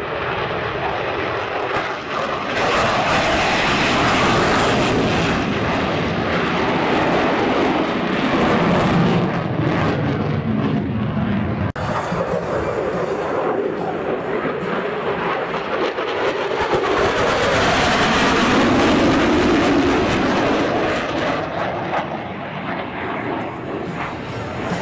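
Twin turbofan jet engines of a US Navy F/A-18 Super Hornet roaring as it flies low past: the roar drops in pitch as the jet climbs away, then builds again to a second peak before fading.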